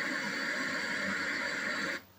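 Steady hiss from an old analog home-video tape's sound track playing back through a TV, cutting off abruptly at the end.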